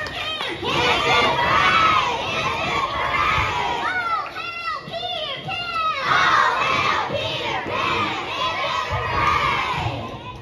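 A group of children shouting and cheering together, many voices at once, with several high whoops that rise and fall about four to six seconds in.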